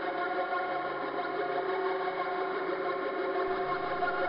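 Korg Monotron Delay analogue synthesizer holding a steady, buzzing drone of several stacked pitches. About three and a half seconds in, a lower note comes in underneath.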